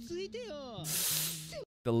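A short burst of speech, then a sharp hiss lasting about a second that cuts off suddenly.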